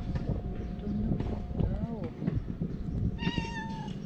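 A tabby-and-white cat meowing while being stroked: a short meow about two seconds in, then a longer, high, level meow near the end.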